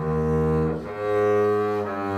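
Double bass played with the bow: sustained notes of a slow phrase, a new note starting at the beginning and another about a second in, after a short dip between them.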